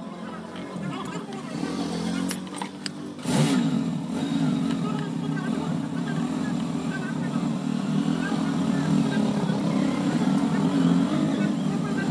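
A few hammer knocks on packed clay and rubble in the forge hearth, then about three seconds in a loud, steady engine drone starts and runs on, louder than the knocks.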